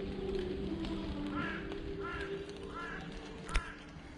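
A bird calling three times in short arched calls, with a single sharp click near the end.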